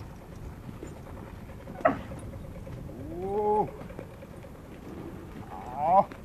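Bactrian camels calling: a short sharp cry about two seconds in, then a longer call that rises in pitch and holds, and another rising call near the end.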